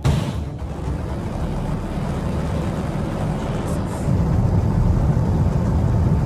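Sound effect of a missile launching: a steady, deep rocket rumble that grows a little louder as the missile climbs.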